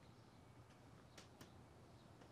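Near silence: faint room tone, with two brief faint clicks a little after a second in.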